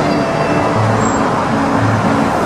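Steady road traffic noise from cars passing on the busy street below, with background music underneath.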